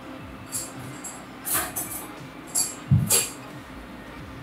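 Knife and fork handling while a lime is cut on a cutting board: a few short clinks and taps, with a louder knock about three seconds in.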